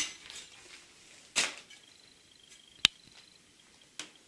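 A new steel gauging trowel being handled as it comes out of its packaging: a sharp click, a short scrape about a second and a half in, and another sharp click near three seconds, with quiet between.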